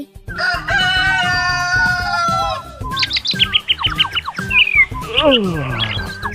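A rooster crowing once in a long held call that falls away at the end, the dawn cue, followed by a run of short high bird chirps and a falling swoop, over light background music.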